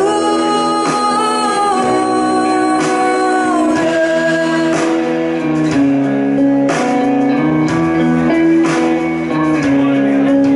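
Live band performance: a woman singing long held, sliding notes over electric guitar and bass guitar.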